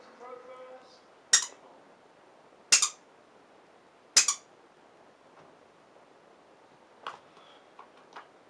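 Three sharp clacks about a second and a half apart, then a fainter one near the end, as a blue rubber dog chew toy is knocked about low by the floor to tease a terrier.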